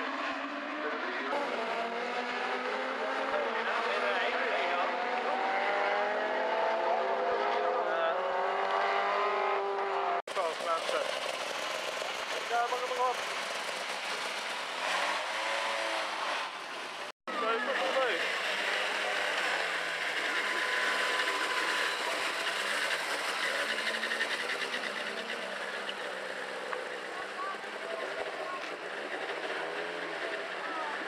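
Several rallycross cars' engines revving hard as they pull away from the start, the pitch climbing again and again through the gears. After a cut, engines run at steadier revs, with a brief dropout in the sound just over halfway.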